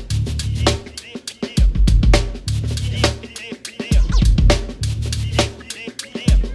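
Live drum kit playing a steady 16th-note groove of hi-hat, snare and bass drum, over a deep sustained bass part from the band.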